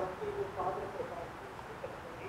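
Faint speech, a voice talking briefly away from the microphone.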